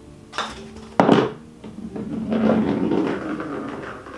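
A putter strikes a golf ball on an artificial-turf putting mat with a single sharp knock about a second in. A rumbling rattle of the ball rolling over the mat follows for about two seconds.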